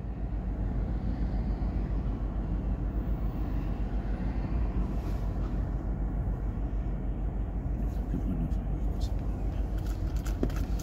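Steady low rumble of a car idling in stopped traffic, heard from inside the cabin.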